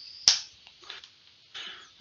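A single sharp computer-keyboard keystroke about a quarter-second in, as highlighted text is deleted, followed by a few faint soft noises.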